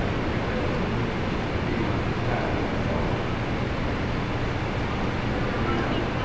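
Steady room noise and recording hiss in a conference hall, with the faint, distant voice of an audience member asking a question away from the microphone.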